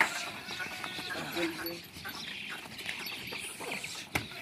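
A pen of Rajanpuri goats moving about and being handled, with irregular short animal sounds and small knocks over voices.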